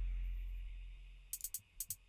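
The deep bass of a trap beat fading away, then a few short, crisp hi-hat ticks in the second half as hi-hat notes sound while being placed.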